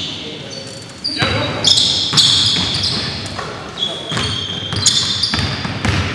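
Basketball game on a gym floor: sneakers squeaking in short high squeals on the hardwood, with the ball bouncing and thudding a few times in a reverberant hall.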